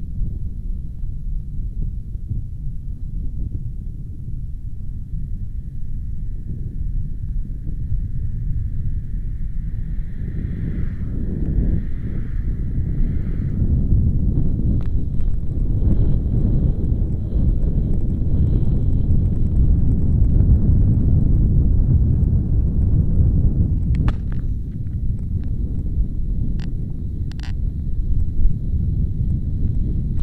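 A steady, loud low rumble with no clear pitch, with a few sharp clicks near the end.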